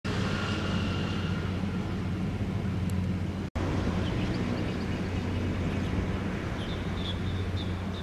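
Outdoor city ambience dominated by a steady low hum, with faint high chirps in the second half. The sound cuts out for a split second about three and a half seconds in.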